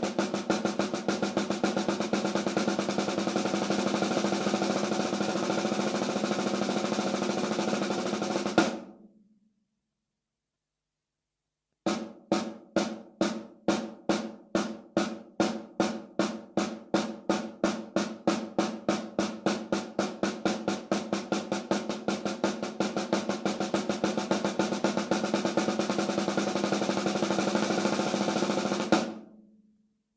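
Snare drum played with sticks in double strokes (right-right, left-left): a fast, even run that ends on an accented hit about nine seconds in. After about three seconds of silence, a slower, steady run of strokes follows and ends on another accented hit near the end.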